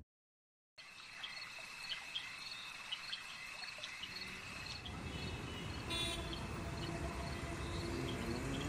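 After under a second of dead silence, faint insect-and-bird ambience: crickets chirping with a steady high trill, and short chirps repeating a few times a second. A low rumble grows underneath from about halfway, and a brief hiss comes near the end.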